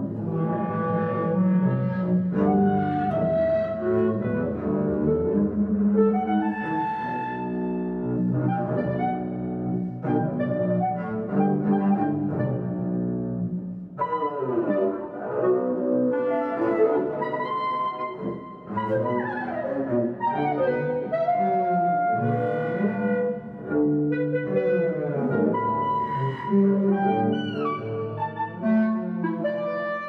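A bowed double bass and a B-flat clarinet playing a contemporary duet together, a busy, continuous run of short and held notes. Near the end there are sliding pitches.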